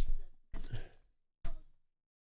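Short breathy exhales close to the microphone, three in quick succession, then the sound cuts out completely near the end.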